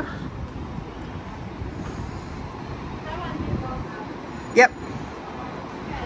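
City street ambience: a steady hum of traffic and street noise with faint voices of passers-by. A little past the middle comes one very brief, sharp, pitched sound, the loudest moment.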